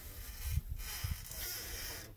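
Faint steady hiss with an uneven low rumble underneath: background noise on the microphone, with no distinct event.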